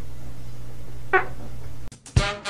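A single short, high-pitched squeaky call about a second in, over a steady low hum.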